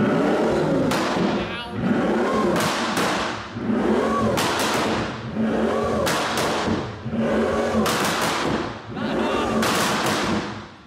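Pagani Imola's twin-turbo V12 being revved hard and repeatedly while standing, about one rev a second, each rising and falling in pitch, with sharp cracks from the exhaust. It is loud and echoes inside a showroom.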